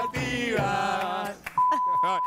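Voices singing long held notes for just over a second, then a steady high-pitched beep, a broadcast censor-style bleep, that starts about one and a half seconds in and runs on over a voice.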